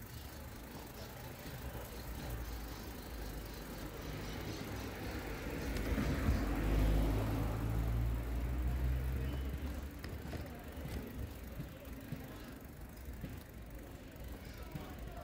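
A car driving past on the street: its engine hum and tyre noise build, peak about halfway through and fade away, over steady street background noise.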